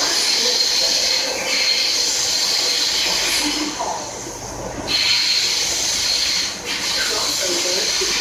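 Cabin noise of an SMRT C751B metro train running through a tunnel: a steady loud rushing with a thin high squeal from the wheels, easing briefly about four seconds in and again near seven seconds.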